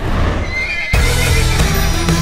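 A horse whinnies, a short wavering call over music; just under a second in, louder music comes in abruptly.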